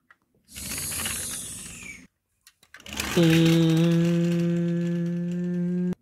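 Pretend car sounds for a toy car driven along the floor. First a hissing whoosh lasts about a second and a half. After a short pause comes a steady, held engine-like drone that cuts off suddenly near the end.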